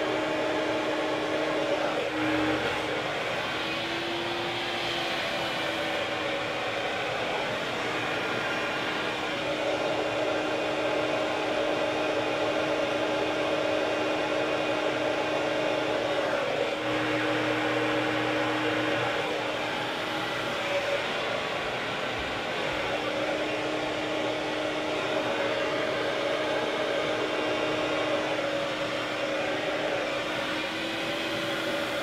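Hand-held hair dryer blowing steadily during a round-brush blow dry, its motor hum shifting slightly in pitch now and then.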